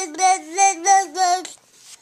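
A toddler's high voice chanting a sing-song string of syllables on nearly one pitch, stopping about a second and a half in.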